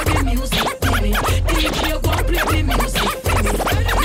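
Dancehall mix with a heavy bass beat under DJ turntable scratching: many quick swipes sweeping up and down in pitch. The sound drops out for a moment near one second and again about three seconds in.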